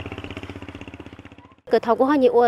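An engine running with a steady, rapid pulse, fading away over about a second and a half before it cuts off abruptly.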